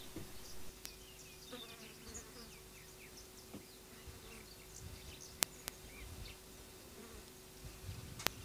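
Faint insect buzzing with scattered high chirps. Two sharp clicks come about five and a half seconds in.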